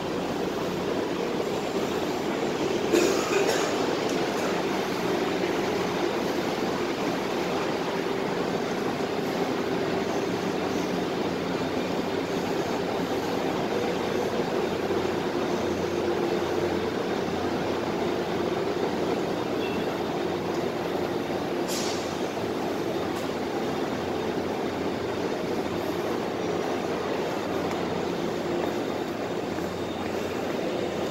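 Steady drone of a Saemaul-ho diesel-hauled passenger train at a station platform. There is a short louder clatter about three seconds in and a brief hiss a little past the middle.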